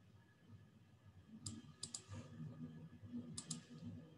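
A few faint computer mouse clicks: three quick clicks about a second and a half in, then two more near the end, as the presentation slides are advanced.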